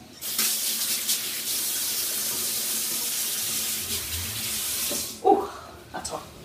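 Kitchen tap running into the sink while hands are washed under it, a steady rush of water that is turned off about five seconds in.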